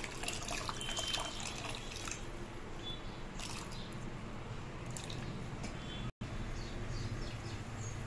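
Liquid poured into a metal pot of rasam and stirred with a spoon: a steady liquid trickle and slosh with scattered small scrapes and clicks, breaking off for an instant about six seconds in.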